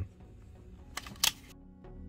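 Two sharp clicks about a quarter second apart over faint room noise, then background music fading in near the end.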